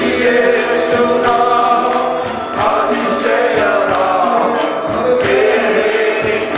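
Several men singing a Malayalam worship song together into microphones, backed by keyboard and a steady beat.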